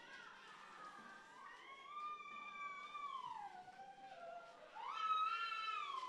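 A woman in the congregation wailing faintly with long, high-pitched cries. One drawn-out cry slides downward in pitch, and a second rises about five seconds in and is held high.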